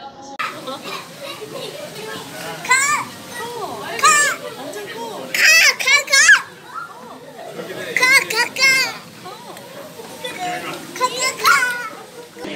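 A young child's excited, high-pitched squeals and laughter in about five short outbursts, over a background murmur of other voices.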